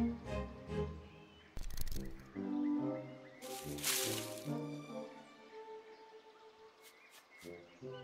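Orchestral cartoon score with held string and wind notes. Two short bursts of noise cut across it, one about two seconds in and a longer one around four seconds, and a few faint clicks come near the end.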